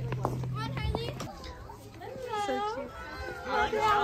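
Young children's voices: high-pitched calls and exclamations that grow louder from about halfway in.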